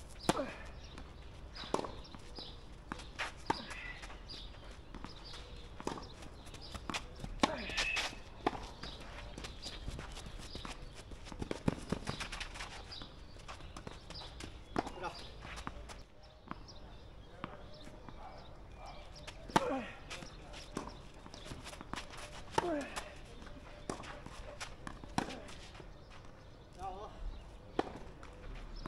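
Tennis ball hit back and forth with rackets in two rallies: sharp pops a second or two apart, the loudest one past the middle.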